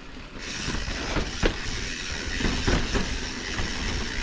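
Mountain bike riding over rocky sandstone trail: tyres rolling and crunching over rock with a steady hiss and low rumble, and the bike rattling, with several sharp knocks from bumps.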